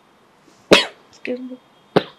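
A single sharp cough, the loudest sound here, followed by a brief voiced sound and a sharp click near the end.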